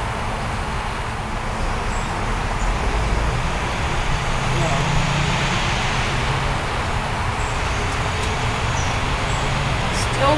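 Steady outdoor background noise: an even hiss over a low rumble that swells a little around the middle.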